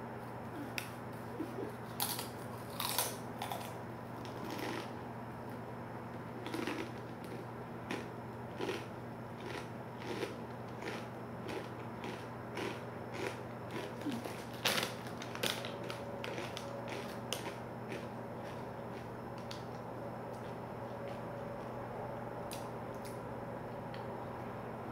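Crunchy rolled Takis Fuego tortilla chips being bitten and chewed with the mouth, crisp crunches coming about once or twice a second. The crunches thin out and fade after about seventeen seconds.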